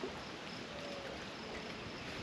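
Quiet, steady outdoor background noise on open water, with no distinct event. A faint, short thin tone sounds a little under a second in.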